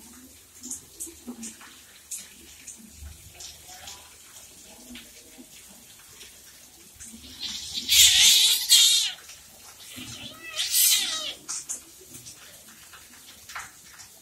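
Two kittens wrestling, with light scuffling and rustling throughout, and two loud hisses about eight and eleven seconds in, the first mixed with a short growl.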